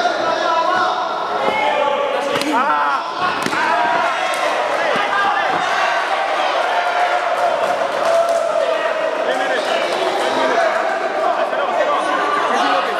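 Spectators and corners shouting over a Thai boxing bout in a hall, with several sharp thuds of strikes landing, the clearest about two and a half and three and a half seconds in.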